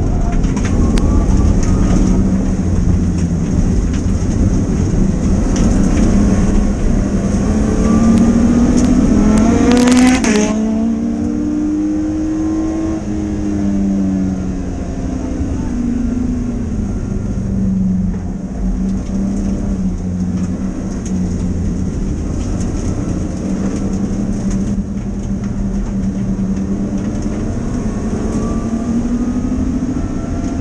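BMW E30's naturally aspirated M30 straight-six under racing load, heard inside the stripped cabin. The engine note climbs hard, then drops in pitch and level about ten seconds in with a short sharp noise at the change. It runs lower for a while and rises again near the end.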